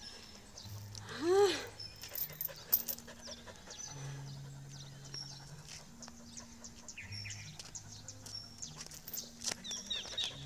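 Dog panting while walking on a metal chain leash, with the chain clinking and footsteps in flip-flops on concrete; a short rising-and-falling vocal sound comes about a second in.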